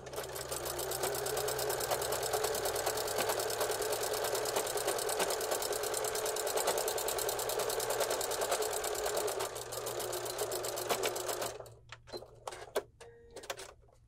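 Necchi electric sewing machine, fitted with a walking foot, stitching a hem through heavy woven fabric at a steady speed with a fast, even stitch rhythm. It stops suddenly near the end, followed by a few light clicks as the fabric is handled.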